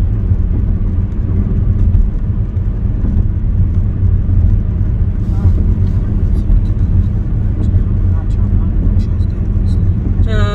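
Steady low rumble of road and engine noise inside a car's cabin while it is being driven.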